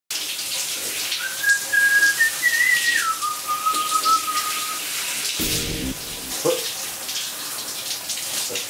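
A shower running behind the glass door, a steady hiss of spraying water, while a person whistles a few long held notes that step up and then drop lower, ending about five seconds in. A brief low sound follows a little after.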